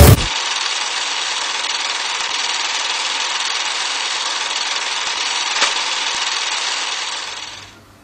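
Film projector sound effect: a steady mechanical running hiss and rattle with a single click about five and a half seconds in, fading out near the end.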